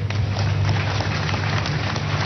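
Crowd noise from a church congregation in a large hall: a steady low rumble with many small scattered clicks.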